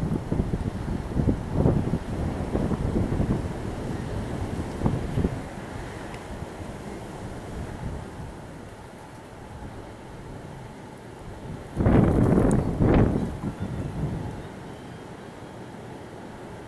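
Wind buffeting the microphone in uneven low gusts, with the strongest gust about twelve seconds in.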